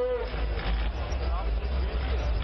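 Steady low rumble of idling vehicle engines under the noise of a crowd, with a voice heard briefly at the start and again, fainter, about halfway through.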